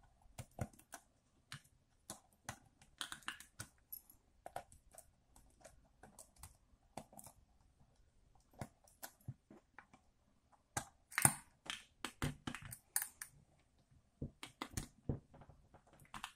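Faint, irregular clicks and taps of fingers handling the plastic body of a disassembled Canon 1200D DSLR, with a denser run of louder clicks about eleven to thirteen seconds in.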